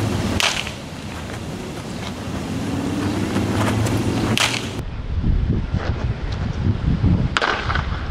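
Baseball bat striking pitched balls three times, a sharp crack about every three to four seconds, over a low rumble of wind on the microphone.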